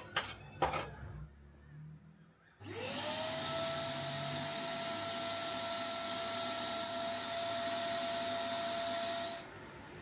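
Two sharp metal clinks as steel tongs handle the crucible. Then an electric vacuum-type motor spins up to a steady whine, runs for about seven seconds while the molten aluminium is poured, and cuts off.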